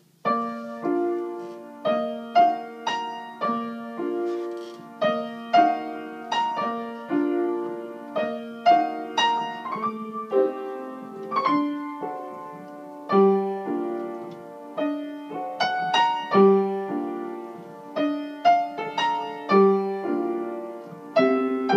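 Wurlitzer piano played with both hands at a slow ballad pace. Left-hand chords of three or four notes sit under a right-hand melody, struck about once a second and left to ring and fade.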